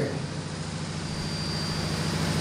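A pause in the speech, filled with a steady low hum that grows slowly louder.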